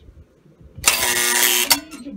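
Marx 1614 dump station's electric mechanism tipping a tin dump car, a loud rattling buzz lasting just under a second as the car's load of foil-wrapped chocolates spills out.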